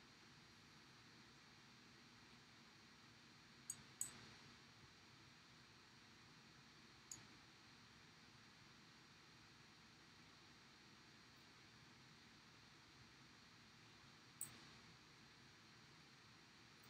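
Near silence: room tone, broken by a few faint, short clicks, a close pair about four seconds in, one near seven seconds and one near the end, as fly-tying tools and materials are handled at the vise.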